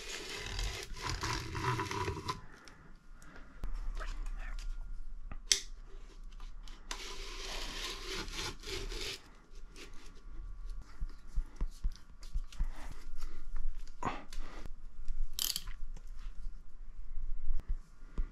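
Hand handling noise as Kapton-taped copper field windings are pushed and fitted into a steel electric motor housing: rubbing and scraping in several stretches, with a few sharp clicks of metal against metal.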